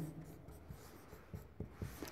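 Faint marker-on-whiteboard writing: a few soft, short strokes of a felt-tip marker on the board.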